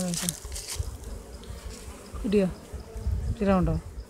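Honeybees buzzing around a brood frame held up out of the hive during colony division, a steady hum with short voice sounds breaking in three times.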